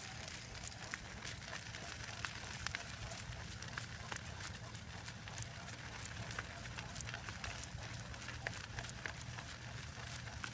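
Dog sulky rolling along a dirt road behind a trotting Great Dane: a steady low rumble from the wheels with scattered light ticks of grit and harness.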